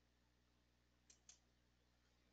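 Near silence with two faint, short clicks close together, about a second in.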